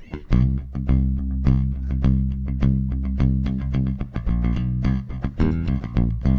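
Electric bass guitar played with a pick: a driving run of fast, evenly repeated picked notes that starts a moment in and stops shortly before the end.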